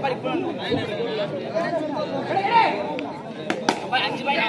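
Many overlapping voices of spectators and players chattering and calling out. There are two sharp knocks close together about three and a half seconds in.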